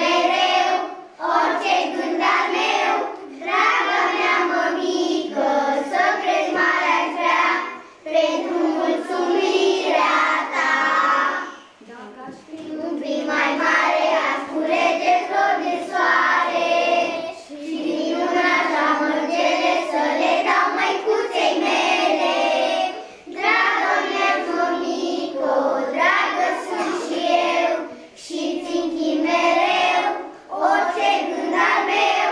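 A group of young children singing a song together, line by line, with short breaks between phrases.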